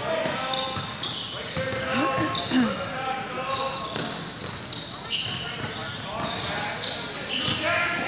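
Basketball game on a hardwood court in a large gym: the ball bouncing, sneakers squeaking in short high chirps, and indistinct shouts from players and the sideline.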